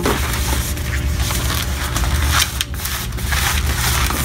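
Latex modelling balloon being twisted and worked between gloved hands: irregular crackling rubs and creaks of stretched rubber, over a steady low hum.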